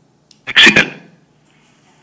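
A man sneezes once, sharply and loudly, about half a second in.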